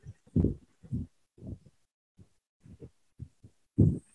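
About eight or nine soft, low, muffled thumps at irregular intervals, each brief, with silence between them.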